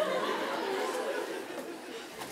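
Many voices chattering and murmuring at once in a hall, an audience talking over each other.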